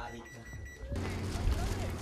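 Quiet room tone that cuts off abruptly about a second in. In its place comes a steady outdoor hiss with a low rumble from wind and water noise on an open pontoon boat, with faint distant voices.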